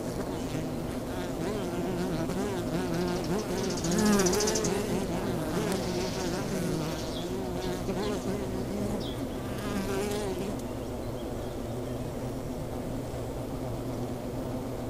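Honeybees flying around their hive, a continuous buzzing in which individual bees passing close make wavering hums that swell and fade, loudest about four seconds in.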